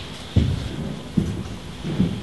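Slow, heavy footsteps on a hollow wooden stage floor: three low thuds in two seconds, the first the loudest.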